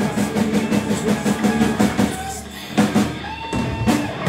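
Live rock band playing an instrumental passage on electric guitars, bass and drum kit. The sound thins out briefly about two and a half seconds in, then the band comes back in with loud drum hits.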